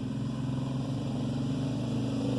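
An engine or motor running steadily nearby, a low even drone with no change in pitch.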